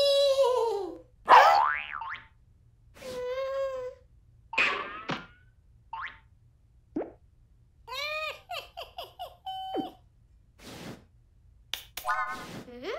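Cartoon sound effects: a string of springy boings and sliding whistle-like tones, with short gaps between them and a quick run of short pitched blips about eight seconds in.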